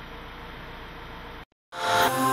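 A steady, even hiss that cuts off suddenly about one and a half seconds in; after a moment of silence, a music jingle begins near the end.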